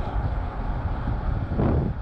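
Steady road noise from a car on the move, with wind rumbling on the microphone.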